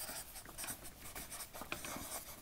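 Felt-tip marker writing on flip-chart paper: a run of short, faint strokes as a word is written out.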